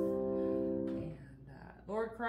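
Grand piano's final chord held and ringing, stopping abruptly about a second in as the dampers come down. A woman's voice starts speaking near the end.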